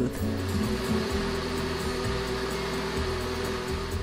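Electric kitchen blender running steadily, pureeing black beans and crushed tomatoes until smooth: an even whir with a held hum, over low background music.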